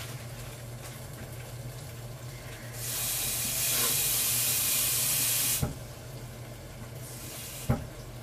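A steady hiss lasting about three seconds, starting a few seconds in and cutting off with a click, then a single sharp tap near the end.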